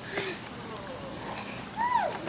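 Children's voices in a swimming pool: a few short calls, with a rising-and-falling squeal near the end.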